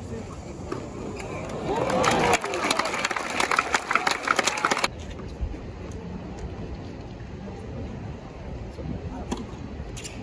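Tennis spectators applauding briefly after a point, a dense patter of clapping that cuts off suddenly. It is set in a steady murmur of crowd voices.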